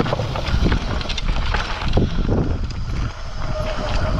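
Pivot Phoenix carbon downhill mountain bike riding fast over wooden planks and loose rock, with tyres crunching and the bike rattling over rapid knocks. Wind buffets the action camera's microphone throughout.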